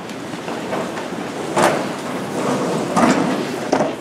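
Chairs scraping and knocking and people shuffling as a group sits back down at tables, with a sharp knock about one and a half seconds in and a couple more near the end.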